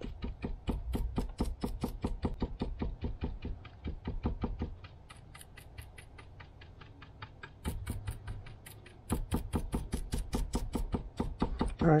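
Stiff paint brush dabbing paint onto a wooden plank: a quick run of taps several times a second, easing off for a couple of seconds in the middle before picking up again.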